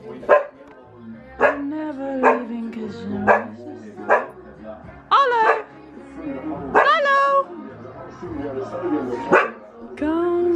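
A pet spaniel barking repeatedly, about once a second, with two longer, drawn-out calls about five and seven seconds in.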